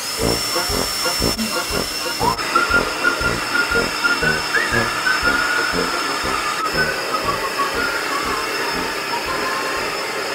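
Handheld hair dryer switched on suddenly and blowing: a loud, steady rush of air with a thin high whine, over rapid, uneven low thumping.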